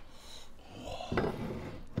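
Faint handling of cookware at a steaming wok just taken off the heat, with a single light knock about a second in.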